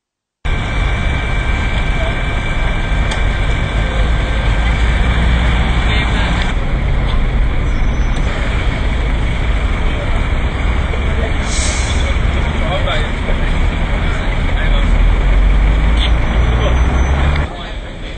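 Loud, steady road-traffic rumble with the indistinct chatter of a group of people. The rumble drops away abruptly near the end.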